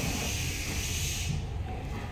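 A steady high hiss over a low rumble; the hiss cuts off suddenly a little over a second in, leaving the rumble.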